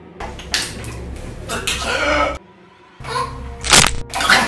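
A man groaning and gasping in pain, without words, then a sudden sharp crack near the end that is the loudest sound.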